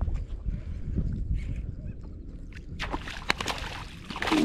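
Low rumble of wind on the microphone and water around the boat, with sharp splashes late on from a hooked speckled trout thrashing at the surface.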